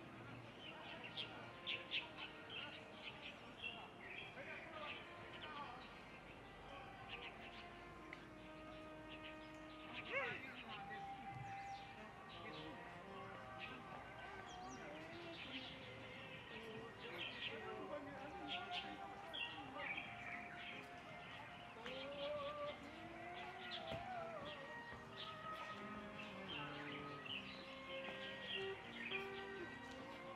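Small birds chirping and tweeting again and again in trees and brush. Faint distant voices and tones sound underneath.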